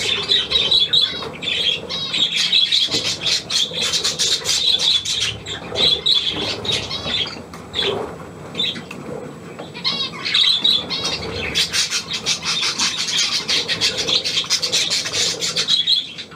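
Several budgerigars chattering and warbling almost without pause, with short squawks and clicks mixed in; the chatter eases off for a moment about halfway through.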